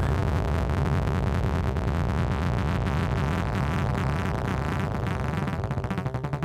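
Synthesizer sequence played at an extreme tempo, thousands of BPM, so the notes blur into a rapid buzz. Near the end the notes start to come apart and slow as the tempo is brought down.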